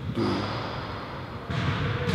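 A man's voice saying one short word, then a pause filled with steady background noise and a faint high-pitched whine; the noise grows louder about a second and a half in.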